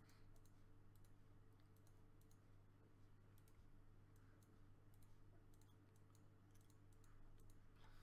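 Faint computer mouse clicks in a quick, irregular run, each one placing a stone on an online Go board, over a low steady electrical hum.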